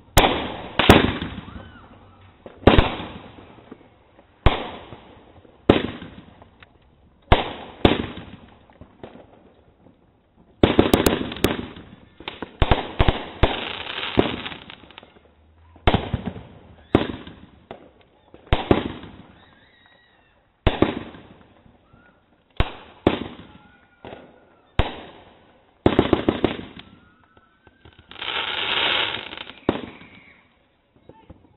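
Consumer aerial fireworks bursting overhead in a run of loud bangs about one to two seconds apart, each trailing off in a fading rumble. A quick flurry of bangs comes around the middle, and a longer rushing burst near the end.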